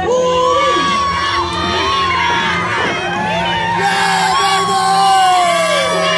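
Crowd cheering and shouting, many voices overlapping without a break.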